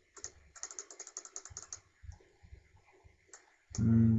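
Fast runs of clicks from a computer keyboard, about ten a second, thinning out after the first two seconds. Near the end a brief hum from a voice is the loudest sound.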